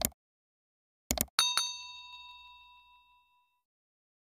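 Subscribe-button animation sound effect: short mouse clicks, then a bell ding about a second and a half in that rings and fades away over about two seconds.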